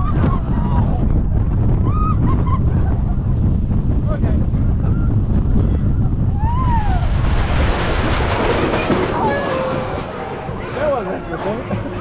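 Steel Eel Morgan hypercoaster train rolling along the track with wind buffeting the microphone and a low rumble, and a few short rider calls. About seven seconds in the rumble falls away and a loud hiss rises as the train slows on the brake run coming into the station.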